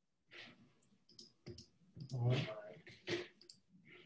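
A handful of sharp clicks and handling sounds, with a brief low murmur of a voice about two seconds in.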